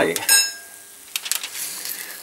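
A sharp metallic clink with a short ringing about a third of a second in, as a fork knocks the wire rack of a grill pan while a cooked steak is lifted off it, followed by a few softer clicks.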